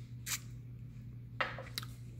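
A small whiskey tasting glass being picked up and handled on a glass tabletop: a brief rustle, then a sharp glassy knock about three-quarters of the way in followed by two lighter clicks, over a faint steady low hum.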